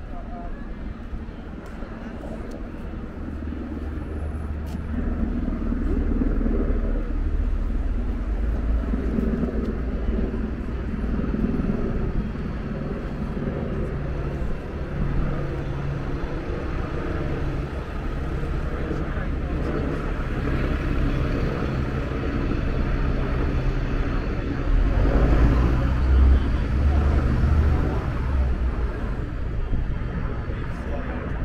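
Street traffic on a town quayside: a bus engine runs and passes close by, with other vehicles and the voices of people walking past.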